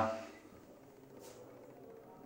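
The tail of a man's spoken word fades out, then quiet room tone in a small bathroom, with one brief faint rustle about a second in.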